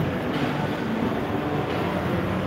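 Steady background noise of a busy indoor shopping mall: a continuous low hubbub with no distinct events.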